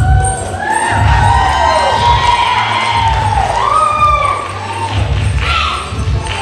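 Belly dance music with a steady pulsing drum beat, with an audience cheering and whooping over it in many overlapping calls.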